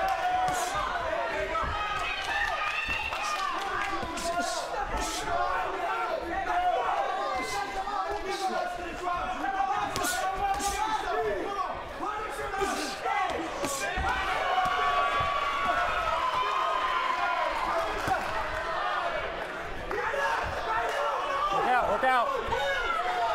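Gloved punches landing in a boxing exchange: a dozen or so sharp smacks at irregular intervals, most of them in the first part. Underneath runs the steady shouting and calling of the ringside crowd.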